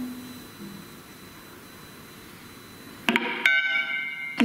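Prepared guitar: a low held note dies away, then after a quiet stretch a sudden bright, high, metallic-sounding ring is struck about three seconds in and keeps ringing.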